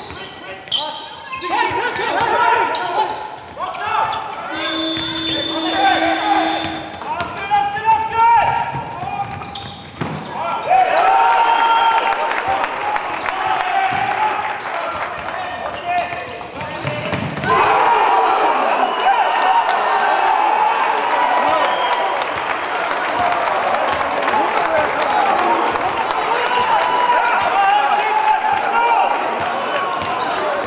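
Basketball game in a large sports hall: the ball bouncing on the wooden court amid voices that run throughout and grow denser and louder in the second half. A steady tone sounds for about two seconds near the start.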